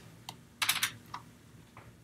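Keystrokes on a computer keyboard as code is typed: a few separate key clicks with a quick run of three or four a little over half a second in.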